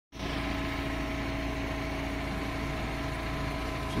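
Truck-mounted crane's diesel engine running steadily under load as it holds a lifted frame of steel flanges, an even drone with a faint steady whine.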